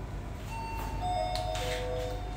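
A bell-like chime of three or four held notes stepping downward in pitch and overlapping, starting about half a second in, over a steady low hum.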